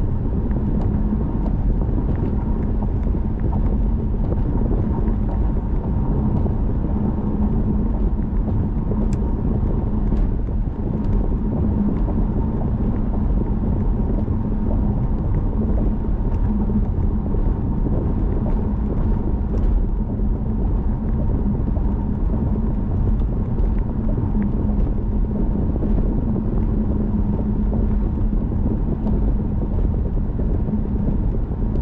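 A car cruising steadily, heard from inside the cabin: an even low drone of tyres on the road and the engine, with a steady hum underneath.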